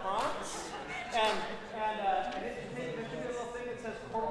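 Speech only: a man talking to the audience.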